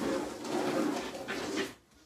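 A long, breathy exhale from a person close to the microphone, lasting almost two seconds and stopping shortly before the end.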